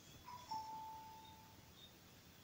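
A faint single tone, about a second long, that steps slightly down in pitch just after it begins.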